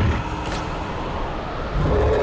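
Deep, rumbling creature-growl sound effect for a horror scene, easing a little midway and swelling again near the end, with a brief whoosh about half a second in. In the story it is the growl of a wild animal that only one of the two women hears.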